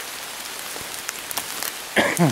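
Heavy rain falling steadily on the woodland leaves, with sharp ticks of single drops striking close by, a few bunched together about a second and a half in.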